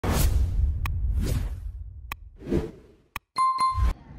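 Short intro sting for an animated logo: a few whooshes and sharp clicks, ending with a bright ding near the end.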